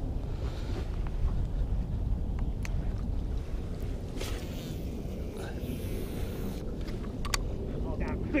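Wind buffeting the microphone over choppy water, a steady low rumble, with waves slapping the boat hull and a few faint clicks and brief hissing along the way.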